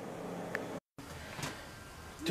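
Faint room tone with a soft click about half a second in, then a brief dead-silent gap where the recording cuts, followed by faint room tone again.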